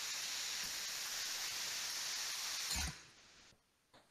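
Steady hiss of water spray from the nozzles of an industrial spray cooling pond. It cuts off abruptly about three seconds in, just after a soft low thump.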